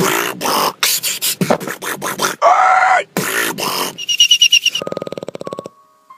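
Beatboxing: a mouth-made bass drop of choppy clicks, bursts and wobbling vocal sounds, ending in a fast buzzing rattle that stops abruptly about five and a half seconds in.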